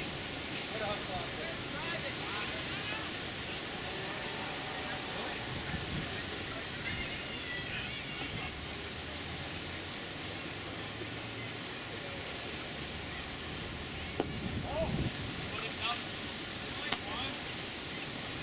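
Open-air ballfield ambience: a steady hiss of outdoor noise with faint, distant voices of players calling out, and one sharp pop near the end.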